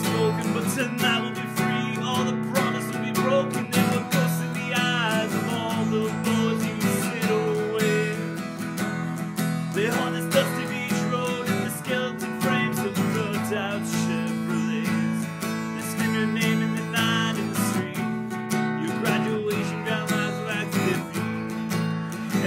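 Acoustic guitar strummed steadily in sustained chords, a solo song accompaniment, with a voice carrying a few wavering notes above it at times.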